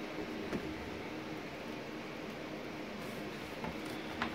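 Steady low hum of running indoor machinery, with a faint tick about half a second in.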